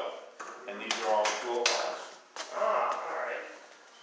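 Brief indistinct voices, with a few sharp clicks or knocks in between.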